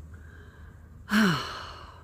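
A woman sighs once, about a second in: a breathy exhale whose pitch falls as it fades.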